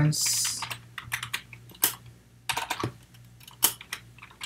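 Typing on a computer keyboard: short irregular key clicks in small runs with brief pauses between them.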